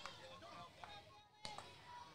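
Near silence, with faint distant voices from the field and stands and a faint tick about one and a half seconds in.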